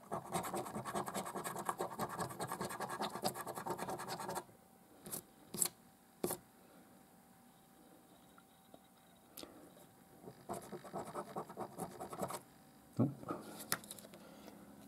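A coin scraping the silver coating off a paper scratchcard: fast, dense rasping strokes for about four seconds, a pause with a few light clicks, then a shorter burst of scratching near the end.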